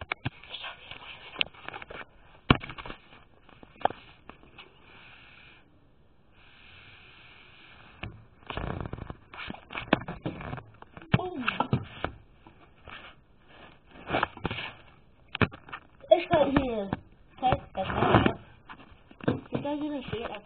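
A girl's voice in short, indistinct stretches, loudest about three-quarters of the way through, with scattered knocks and rustling from the camera being handled and moved.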